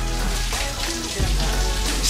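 Steady rain falling on a concrete driveway, an even patter with no breaks.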